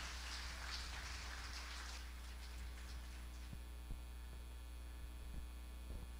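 Steady low electrical mains hum from the sound system, faint, with a soft rustling noise for the first two seconds and a few faint clicks after that.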